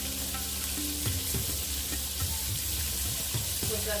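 Cornmeal-coated catfish pieces frying in peanut oil in a stainless steel pan, a steady even sizzle.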